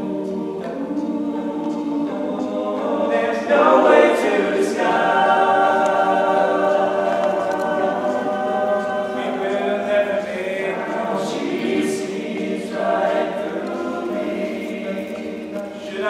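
Male a cappella group singing in close harmony, a lead voice over sustained backing chords, with no instruments. The sound swells about four seconds in.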